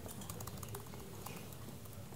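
Quiet room tone with a steady low hum and faint, scattered small clicks.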